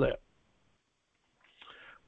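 A man's voice ends a word, followed by a pause of near silence and a faint breath near the end.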